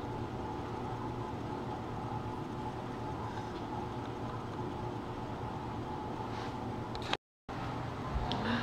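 A steady low hum with a faint hiss and no clear events, cut off by a brief dead silence near the end.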